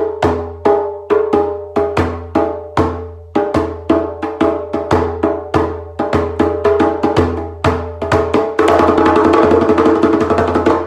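A hand drum beaten with the palm, each stroke ringing with a low tone. The strokes start at about three a second, speed up, and near the end become a fast continuous drumroll.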